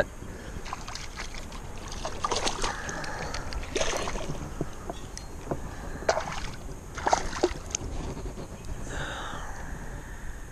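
A hooked smallmouth bass being handled and unhooked in a kayak: scattered small clicks, knocks and splashes as the fish flaps, over a low hiss.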